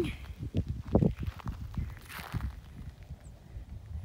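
Footsteps on dry dirt and grass: a run of soft, irregular low thuds, with a brief rustle about two seconds in.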